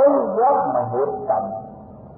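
A man's voice chanting in slow, sliding drawn-out notes, dropping away about one and a half seconds in.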